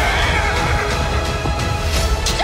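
Loud trailer music with a horse neighing over it near the start.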